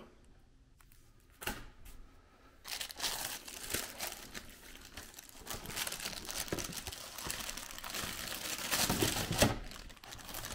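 Thin plastic packaging bag crinkling continuously as a hand handles it and draws the drive out of it, starting a little under a third of the way in and loudest near the end.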